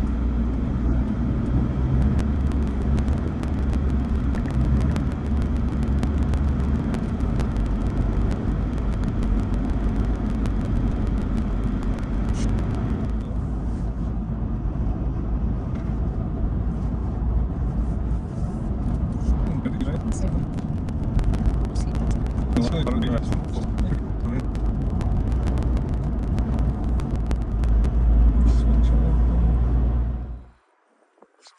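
Cabin noise of a Toyota Hilux driving along a country road: a steady low engine and tyre rumble, growing a little louder near the end.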